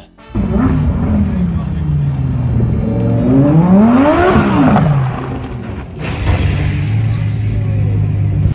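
A sports car engine running and revving once: the pitch climbs to a peak about four seconds in and falls back, then the engine idles steadily.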